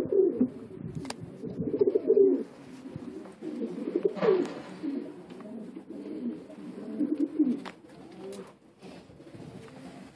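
Several domestic pigeons cooing continuously, their low calls overlapping, with a few sharp clicks in between.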